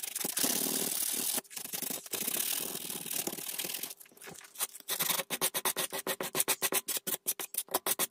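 Sandpaper rubbed by hand over picture-frame backing board to take off dried glue squeeze-out. It starts with long, steady strokes, then from about five seconds in turns to quick short back-and-forth strokes, about five a second.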